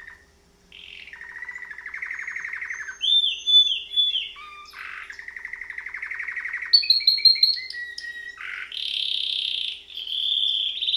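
Domestic canary singing: a string of rapid trills and repeated notes that change phrase every second or two, after a brief pause near the start. The loudest notes are clipped high chirps a little past the middle.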